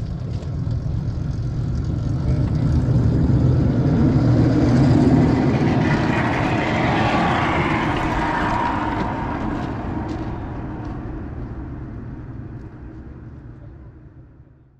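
TunnelFox rail inspection trolley rolling along the track, its wheels on the rails and drive growing louder to a peak about five seconds in, then fading as it passes and moves away.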